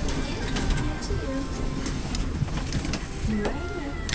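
Indistinct chatter of other passengers in a crowded elevator car, over a steady low rumble, with a few short clicks.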